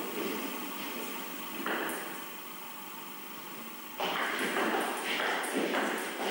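Table tennis ball clicking off bats and the table as a rally begins near the end, a few sharp ticks about half a second apart, over the steady noise of the hall.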